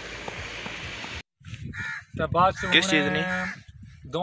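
Steady outdoor hiss for about a second, then an abrupt cut to a man's loud, partly drawn-out voice.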